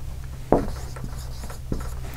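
Marker writing on a whiteboard: two short squeaks or scratches as letters are drawn, one about half a second in and one near the end, over a low steady hum.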